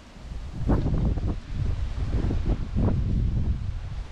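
Wind buffeting the microphone: a gusty low rumble that rises and falls in strength.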